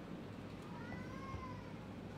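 A cat meowing once in the background, a single call of about a second that rises then falls in pitch, over a steady low room hum.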